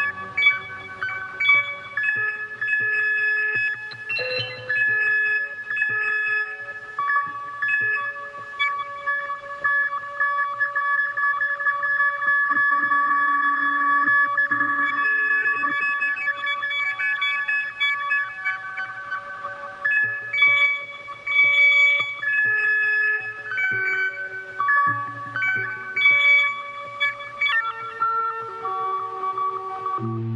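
Slow electronic music from a modular synthesizer: held high tones whose notes shift every few seconds, with a choppier, more broken passage in the last third.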